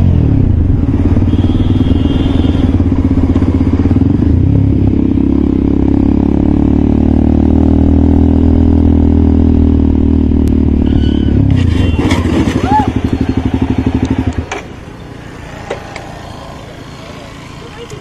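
Motorcycle engine running steadily at riding pace, heard from a camera mounted on the bike. About three-quarters of the way in the engine sound breaks up and then stops abruptly, leaving a much quieter background with a few short sounds.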